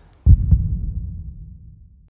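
A single deep, low boom in the soundtrack that hits about a quarter of a second in and fades away, ending abruptly as the audio cuts off.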